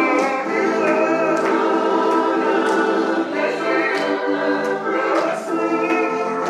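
Gospel choir music: voices singing together over sustained chords.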